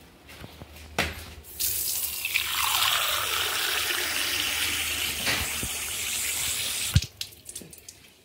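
Water running from a tap into a steel tumbler for about five seconds, starting with a knock about a second in and cut off by a sharp clack near the end.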